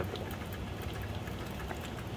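Steady low hum of room background, with a few faint light ticks.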